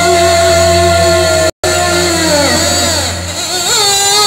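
A live fusion band playing amplified music, with long held notes. The sound cuts out for an instant about a second and a half in, then comes back with notes sliding down in pitch before settling on a new held note near the end.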